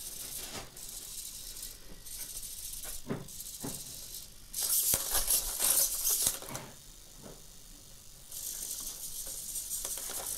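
The hobby servos of a 3D-printed quadruped robot buzzing and whirring as they twist its body from side to side. The buzz swells and fades in surges and is loudest a little after the middle.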